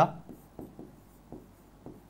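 Marker pen writing on a whiteboard: a few faint, short strokes as letters are written.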